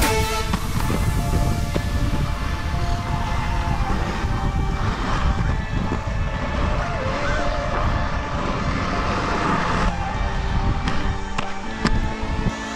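Background music over the steady rolling noise of inline skate wheels on concrete. The music stands out more clearly near the end, as the rolling noise eases.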